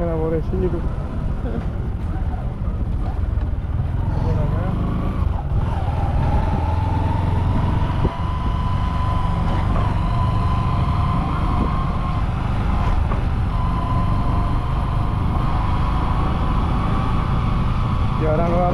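The engine of a road vehicle running steadily while driving, with a continuous low rumble. A steady whine joins it about five seconds in.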